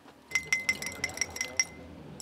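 A drink being stirred in a drinking glass, the stirrer clinking against the glass about eight times in quick succession, each clink ringing briefly.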